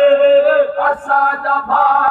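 Men's voices chanting a Sindhi noha, a Shia mourning lament, together. They hold one long note, then move into shorter phrases with brief breaks.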